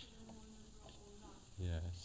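A faint, distant voice speaking off-microphone over tape hiss, typical of an audience member's question on an old cassette lecture recording; a man's voice starts close to the microphone near the end.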